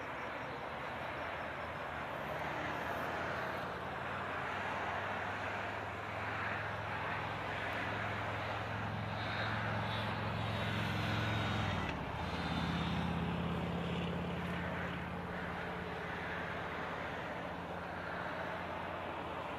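Vehicles of a police escort procession passing on a wet highway: a steady engine drone over tyre hiss, with the engine note stepping higher about twelve seconds in.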